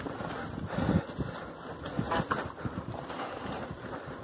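A lowered bike rattling and knocking irregularly as it rolls over a bumpy dirt trail, with scattered jolts and clatters from the frame and parts.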